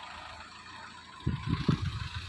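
A Mahindra Verito sedan's engine idling steadily. About a second in, irregular low rumbles join it.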